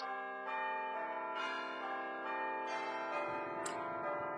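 Church bells ringing, a new strike every half second or so, each tone ringing on under the next and dying away near the end.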